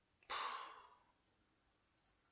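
A man sighs once in frustration: a breathy exhale of under a second that starts strongly and fades away.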